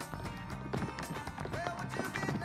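Group of tap shoes striking a stage floor in rapid clattering rhythms over a recorded song with a singing voice.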